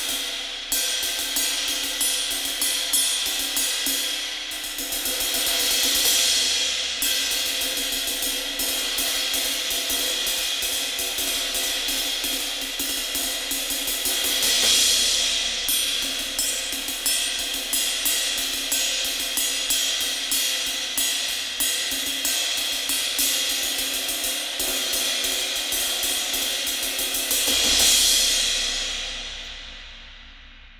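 21-inch Zultan Dune ride cymbal of B20 bronze, played with a drumstick in a steady, fast ride pattern. Louder crashed accents come about six, fifteen and twenty-eight seconds in, and the last one rings out and fades near the end. The sound is dry and trashy and dies away quickly, with few overtones.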